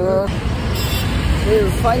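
Road traffic rumbling on a busy city street, with a brief hiss about a second in.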